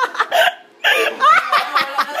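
A group of people laughing loudly: short gasping bursts of laughter, a brief pause just before the middle, then louder, higher laughter with rising pitch.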